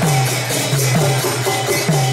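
Devotional kirtan music: a woman singing into a microphone with a group, over karatalas (small brass hand cymbals) ringing in a steady rhythm.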